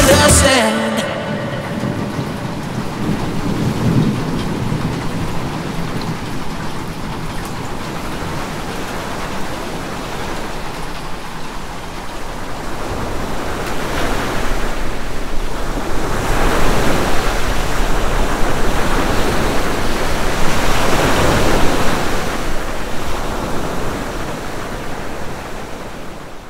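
Steady heavy rain with a low rumble of thunder underneath. It swells louder in waves through the second half and fades out at the end.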